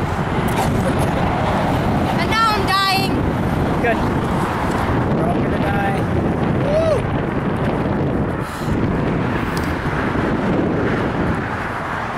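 Steady noise of highway traffic passing below, mixed with wind on the microphone, with a few short vocal sounds around three seconds in and near seven seconds.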